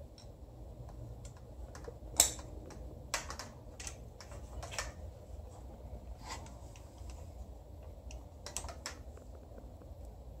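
Scattered sharp clicks and taps of a hand wrench and fingers working on the bolts of an engine's water manifold, the loudest click about two seconds in, over a faint low hum.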